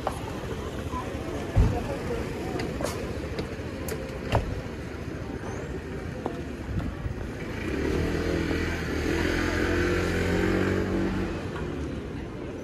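Busy pedestrian street with voices and two sharp knocks in the first few seconds; in the second half a motor vehicle's engine runs steadily, growing louder and then fading.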